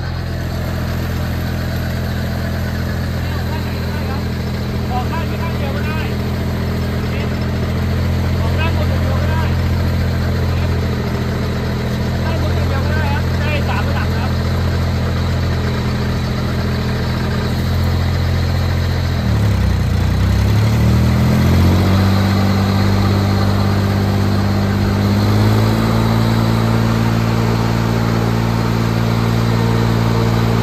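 Mitsubishi four-cylinder engine of a 500-litre self-propelled air-blast orchard sprayer running steadily while the blower fan pushes out spray mist. About 19 s in the engine speed dips and climbs back over a couple of seconds, then rises again a few seconds later.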